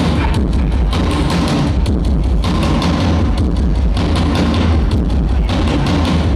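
Live rock band playing loud: electric guitars and bass guitar over a steady drum beat, heavy in the low end.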